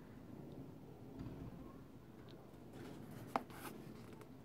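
Faint rubbing and rustling of a sneaker being turned over in the hand, with a cluster of brief scratches and one sharp click a little after three seconds in.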